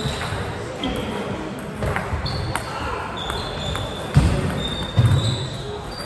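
Table tennis rally: the celluloid ball clicks sharply off the bats and table several times, while shoes squeak on the sports-hall floor. Two heavy thumps come about four and five seconds in. Voices chatter in the background of the echoing hall.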